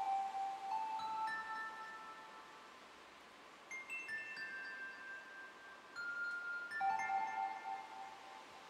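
Modular synthesizer playing sparse, bell-like chime notes that ring out and fade. The notes come a few at a time, with a quiet gap a few seconds in, higher notes about halfway through and lower ones near the end.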